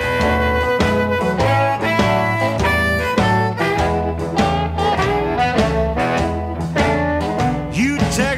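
A blues record playing, with sustained instrument notes over a steady bass line and drums.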